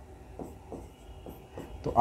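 Pen strokes on an interactive whiteboard screen, a few faint short scratches and taps as numbers are written.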